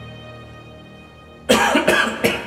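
The last held notes of a ballad's karaoke backing track fade out. About one and a half seconds in, a man coughs loudly twice in quick succession.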